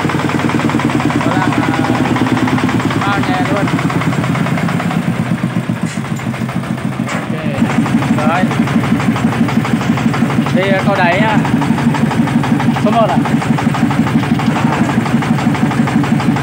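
A Chang Fa 40 hp single-cylinder diesel engine on a công nông farm truck running with a steady, rapid chug. About halfway through it gets louder, with distinct beats about five a second.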